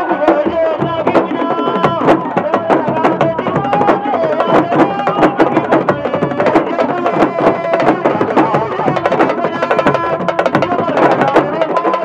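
Senegalese sabar drum ensemble playing a fast, dense rhythm, the drums struck with a stick and the bare hand. Voices sing or chant over the drumming.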